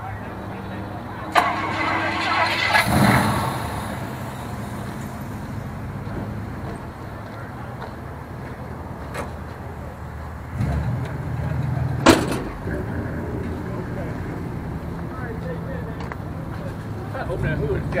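Car engines running at idle in a lot, with an engine growing louder about a second and a half in and again after ten seconds. Two sharp knocks stand out, one near the start of the first louder stretch and one about twelve seconds in.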